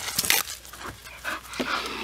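Bull terrier panting hard while it chases and bites at a jet of water from a hose sprayer, with the spray hissing in short irregular bursts.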